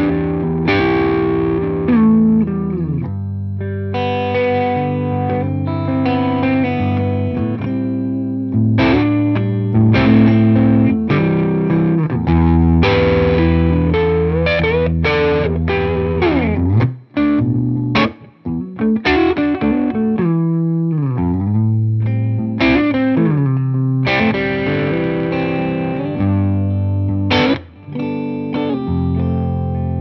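Tokai Love Rock LS128, a Les Paul-style electric guitar with humbucker pickups, played through a Hamstead amp with overdrive: chords and lead lines with string bends, held with long sustain. There are a couple of brief pauses, about two-thirds of the way through and near the end.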